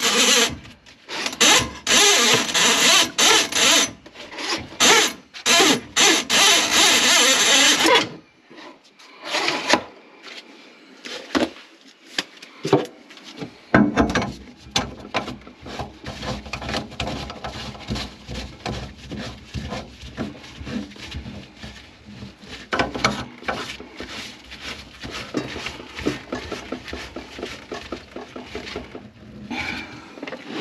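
Loud rasping, rubbing strokes in quick succession for about eight seconds, then quieter irregular scraping and knocks, from work on a plugged kitchen sink drain.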